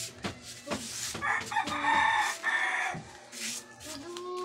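A rooster crowing once, a single drawn-out call from about a second in until near the end, with a few knocks just before it.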